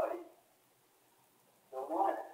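A man's voice in two short bursts, one at the very start and one near the end, with a quiet gap of about a second between.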